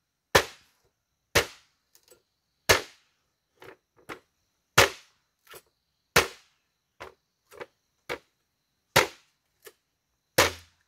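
Machete chopping into a bamboo pole near its base: sharp, hard strikes about every second or so, with lighter taps in between.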